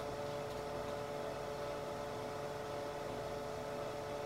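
Room tone: a faint, steady electrical hum over even hiss, unchanging throughout.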